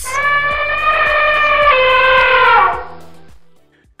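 A single loud, sustained musical note with a bright, many-layered tone, sounding like a held electric guitar note. It starts with a sharp attack, dips slightly in pitch partway through, and fades out after about two and a half seconds.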